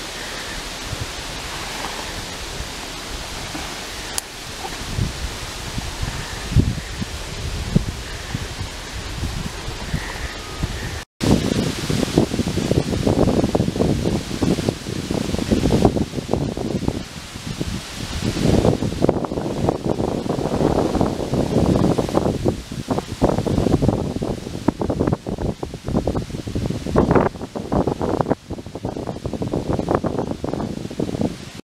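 Steady hiss of wind through foliage. After a cut about eleven seconds in, it gives way to louder, irregular rustling and gusts of wind buffeting the microphone.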